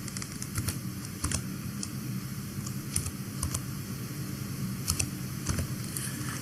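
Computer keyboard being typed on slowly: scattered, irregular keystrokes entering an ID number, over a faint steady low hum.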